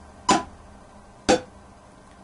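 Metronome clicking at 60 BPM, two sharp clicks a second apart, with a drumstick tapping on a hardback diary in time with the beat.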